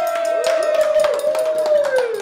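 Voices holding one long, loud whooping note that slides down near the end, over hand clapping.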